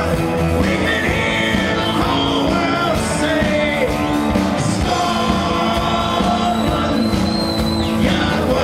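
Live band playing a rock song: a man singing lead into a microphone over strummed acoustic guitar and electric guitar, with drums.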